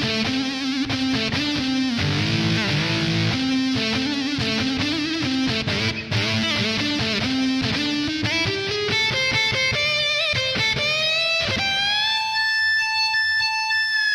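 Yamaha Genos 'Feedbacker' electric guitar voice playing a melodic line. About eight seconds in it slides upward in pitch and settles on one long sustained note near the end. The voice is heard as played, before any EQ change.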